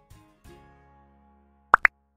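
Background music dying away, then near the end two quick rising pops close together: the click sound effect of an animated like-and-subscribe end screen.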